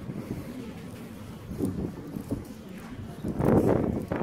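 Rustling handling noise from a phone carried while walking, with a louder rustle about three and a half seconds in.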